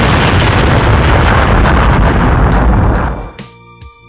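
Loud explosion sound effect: a blast with a long rumble that fades out a little after three seconds in, leaving a few faint held tones.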